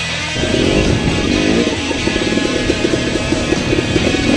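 Dirt bike engine revving hard under load from about half a second in as it climbs a steep hill, over background music.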